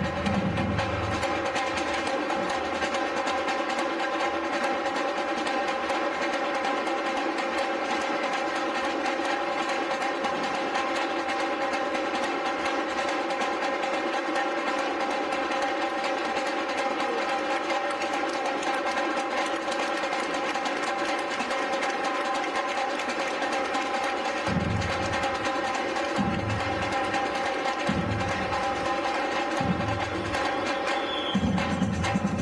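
Batucada drum group playing: for most of the stretch the low drums rest and a fast, steady rattle of snare and higher drums carries on. About 24 seconds in, deep drum strokes come back, one every second or two.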